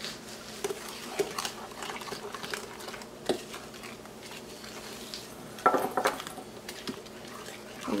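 A hand-held utensil stirring a thick creamed butter-and-sugar mixture in a glass mixing bowl, with light scrapes and clinks against the glass throughout and a sharper clink about three seconds in.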